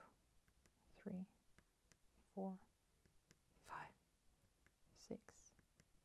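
Soft, almost whispered counting of stitches, with faint small ticks from a needle and embroidery floss passing through cross-stitch fabric between the words.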